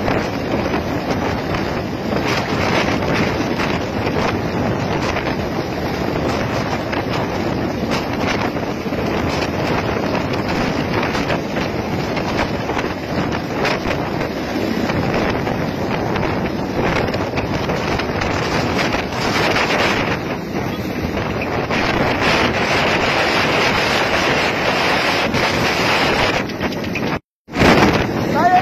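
Mil Mi-17 transport helicopter hovering low overhead: a loud, steady rush of rotor and turbine noise, with rotor downwash buffeting the microphone. The sound cuts out for an instant about a second before the end.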